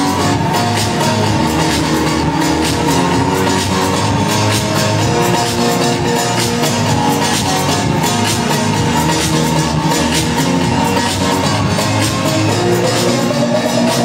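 Loud electronic dance music from a DJ set played over a club sound system, with held synth tones over a steady beat. Near the end a rising sweep begins.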